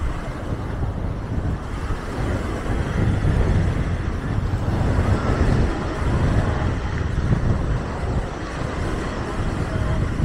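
Small waves breaking and washing up a sandy shore, the surf swelling and easing, with wind rumbling on the microphone and beachgoers' voices in the background.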